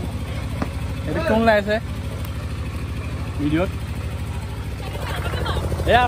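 An engine running steadily with a low, even throb, with short bits of talk over it.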